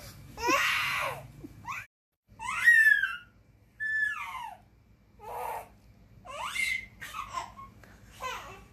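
A toddler laughing and giving high-pitched, gliding squeals in about six short bursts with pauses between them.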